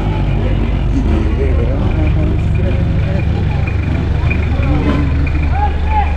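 Busy street ambience: a steady low rumble with the faint chatter of people nearby.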